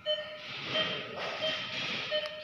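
Short electronic beeps from a patient monitor, repeating about every three quarters of a second, over a steady hiss.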